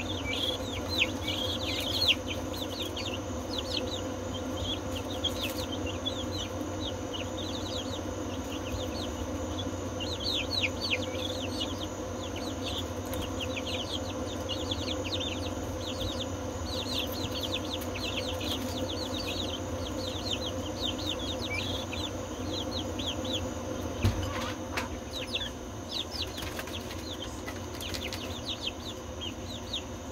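A brood of young chicks peeping: many short, high, falling chirps scattered throughout, over a steady low hum. A single knock comes about three-quarters of the way through.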